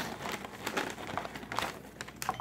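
Thin plastic cereal bag crinkling as it is handled and pulled open, an irregular run of small crackles.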